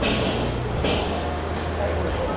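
Busy food-court ambience: a steady low hum under indistinct background voices, with two short hissing sounds about a second apart.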